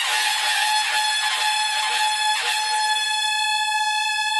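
One long horn-like note held steady at a single pitch, with a faint click about halfway through.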